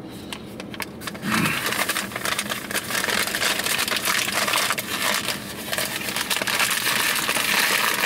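Paper bag crinkling and rustling in a continuous crackle as it is handled and its top is folded and crumpled over.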